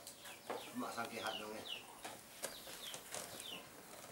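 Chickens clucking and peeping in the background: a scattered series of short, high, falling chirps.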